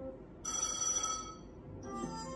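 Merkur Fruitinator Plus slot machine's electronic sounds: a bright ringing chime about half a second in, lasting under a second, then a melodic jingle starting near the end that signals a line win.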